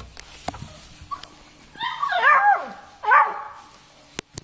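Beagles barking in two high-pitched bursts: a longer run of barks about two seconds in and a short one near the end.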